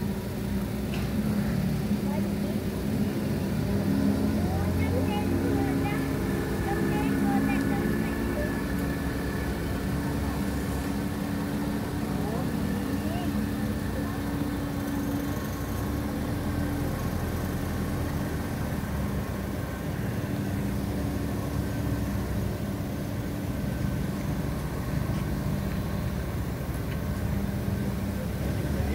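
Outboard motor of a small boat running steadily on the flooded river, a low even engine hum.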